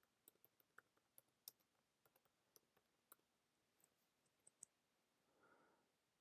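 Near silence, broken by faint, irregularly spaced clicks of computer keyboard keys being typed.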